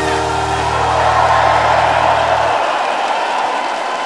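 A Schlager song ending on a held final chord with the drums stopped, over audience applause. The chord cuts off about two and a half seconds in, leaving the applause.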